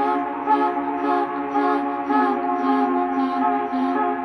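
Ambient electronic music from a live looper-and-laptop set: layered sustained drone tones, with a soft high tick repeating about twice a second.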